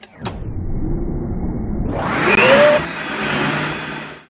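High-powered countertop blender starting up on a jar of banana chunks: a click, then the motor running and grinding through the fruit, stepping up sharply in speed about two seconds in with a rising whine.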